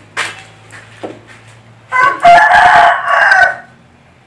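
A rooster crowing once, a loud call of about a second and a half starting about two seconds in, preceded by a couple of small knocks.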